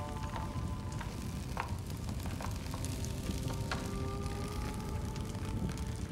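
Log fire burning with dense crackling and a low rumble of flames, starting suddenly, over steady held music.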